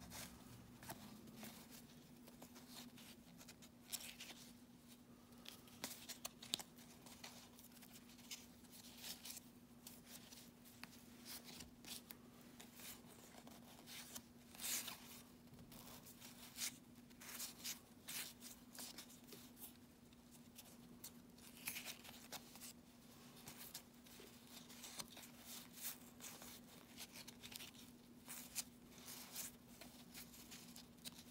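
Faint, irregular flicks and swishes of stiff cardboard baseball cards sliding against each other as they are thumbed through by hand, one card at a time, over a steady low hum.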